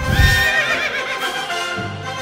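Music with a horse whinny sound effect laid over it: after a low hit at the start, a quavering call that wavers and falls in pitch, dying away about a second and a half in.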